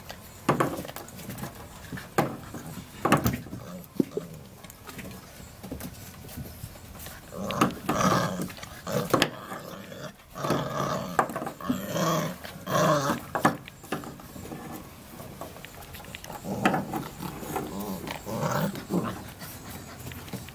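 Young puppies growling in play, in two spells: a longer one starting about a third of the way in and a shorter one near the end. In the first few seconds a few sharp knocks come from the hollow coconut-shell toy hanging on a rope as a puppy mouths and tugs at it.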